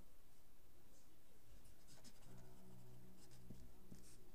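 Felt-tip marker writing on paper: short, faint scratching strokes as letters are drawn. A faint low hum comes in about halfway through.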